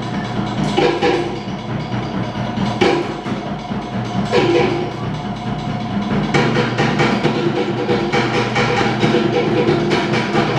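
Tahitian ʻōteʻa drumming: a fast, dense, steady rhythm beaten on wooden slit drums (toʻere), with a deeper drum underneath.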